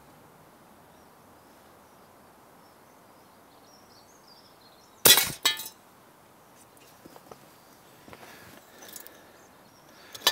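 An air rifle pellet striking a die-cast toy bus with a sharp crack about five seconds in, followed about half a second later by a short metallic clatter as the bus is knocked over.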